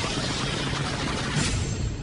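A steady rushing noise that starts suddenly and holds at an even level: a dramatic anime sound effect for a punch landing.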